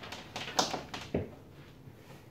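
A few light taps and clicks from a computer power cable being picked up and handled, its plug and cord knocking against each other; the sharpest knock comes about a second in.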